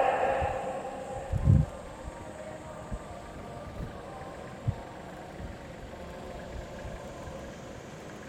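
Faint, steady running of distant Mazda Roadster race cars' engines waiting on the starting grid just before the start, with a low thump about one and a half seconds in and a few lighter knocks after it.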